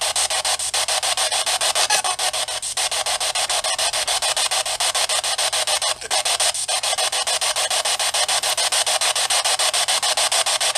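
Radio static from a spirit box sweeping through stations, played through a small portable speaker: a steady hiss chopped into rapid, even pulses, with a few brief dips.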